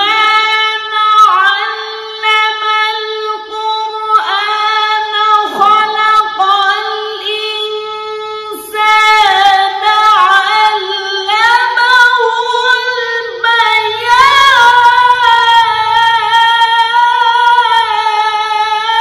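Background song: a high voice singing long, held notes that slide from one to the next, with little else beneath it.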